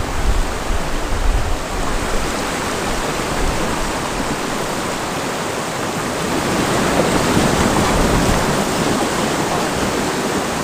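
Rushing whitewater of a shallow, rocky river rapid running close around a canoe, steady and loud, growing louder in the second half.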